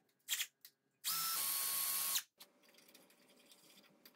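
A couple of clicks, then a cordless drill's motor runs for about a second with a steady whine that steps down slightly in pitch, and stops abruptly.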